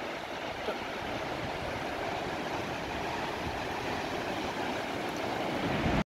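Sea surf breaking offshore and washing up a sandy beach: a steady rush of waves that grows a little louder near the end.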